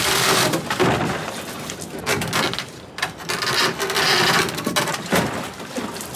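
A plastic bag rustling and crinkling, with knocks against a large plastic bin, as ice is emptied into the bin. The noise dips briefly about three seconds in, then picks up again.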